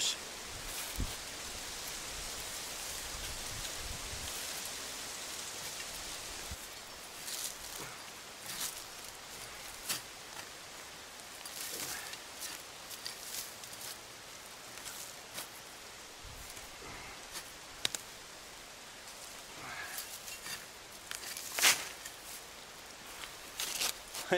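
Hand digging in dry soil with a small blade and bare hands: scattered scrapes, rustles and short knocks as earth is scraped away from nampi tubers, over a steady hiss for the first six seconds.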